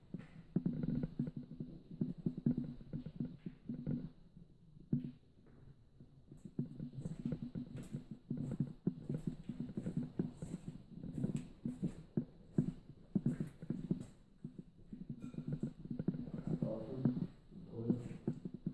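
Low, uneven rubbing and rumbling handling noise from a handheld camera being carried along, with scattered soft knocks.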